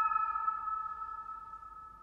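The long decay of a struck bell-like metallic tone, several steady ringing pitches fading evenly away until it has almost died out near the end.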